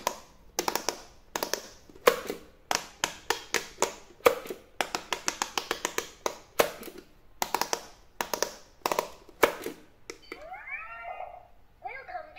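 Fingers pressing the silicone push buttons of a Speed Push electronic pop-it game, a sharp tap with each press, in quick irregular runs. About ten seconds in the presses stop and the toy gives a short warbling electronic sound of rising and falling tones.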